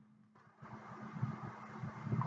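Faint background noise with a steady low hum, the noise growing a little louder about half a second in.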